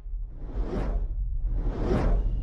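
Sound-design whooshes for an animated logo intro: two swelling swooshes, the first peaking just under a second in and the second near the end, over a deep steady rumble that builds in loudness.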